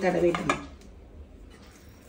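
A woman's voice for about half a second, then quiet, light clinks and scrapes of a steel pan being handled on the counter.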